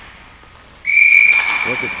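A whistle at hockey practice, blown once in one long, steady, high blast that starts nearly a second in and lasts about a second and a half.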